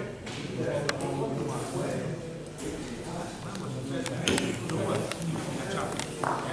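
Men talking in a large, echoing hall, with a few sharp clicks about one second in and again around four seconds in.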